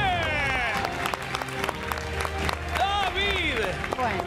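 Studio audience applauding over game-show background music, with voices calling out over it.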